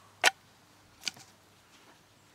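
A Mora 2000 knife drawn from its plastic sheath: a sharp click as the blade comes free, then a second, fainter click about a second later.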